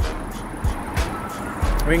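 Busy street ambience: road traffic passing, with a steady low rumble of wind on the phone's microphone and a few light knocks.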